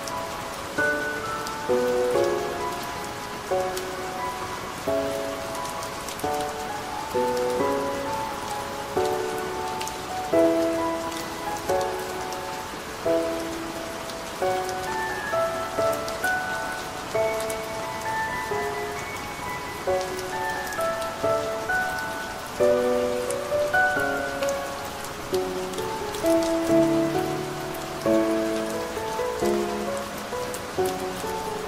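Calm solo piano playing slow, separate notes over the steady sound of soft rain.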